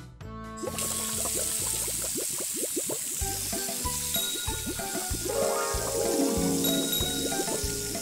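A stream of water pouring into a shallow inflatable paddling pool full of plastic balls, a steady splashing hiss that starts about a second in, under background music with a steady beat.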